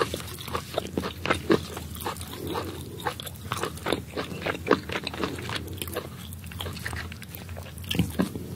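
Close-miked crackling and tearing as the skin and meat of a steamed sand iguana are pulled apart by hand, a run of irregular small crackles and clicks.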